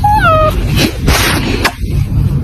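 Cat meowing once, a short high meow that falls in pitch and lasts about half a second, over a steady low rumble.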